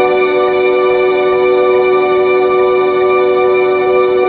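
Background music: a steady held chord that sustains without a beat or change.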